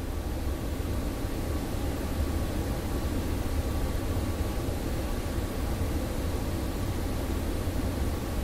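Steady hissing noise over a low rumble, with a faint steady tone running through it.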